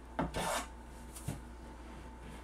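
Hand file rasping across the end of a wooden board, rounding it over: two quick strokes near the start and a fainter one a little past a second in.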